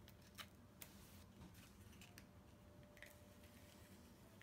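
Faint clicks and light scraping of a Fast Fuse adhesive applicator, a tape-runner-style dispenser, being run along a cardstock tab to lay down a strip of adhesive. Otherwise near silence.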